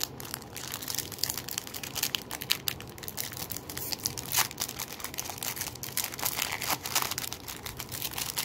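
Foil wrapper of a 1996 Signature Rookies Premier trading-card pack crinkling as fingers work it open at the seam, a steady run of small irregular crackles.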